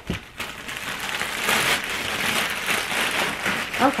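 Plastic poly mailer bag rustling and crinkling steadily as it is handled and pulled open.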